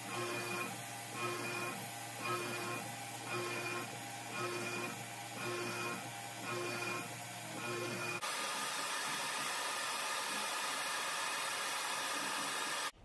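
CNC mill with a 6 mm three-flute end mill cutting a cast aluminium crankcase on an adaptive toolpath. The cutting tone swells and fades in a regular rhythm about every 0.7 seconds as the cutter loops in and out of the cut, over a steady machine hum. After about eight seconds it cuts abruptly to a steady hiss.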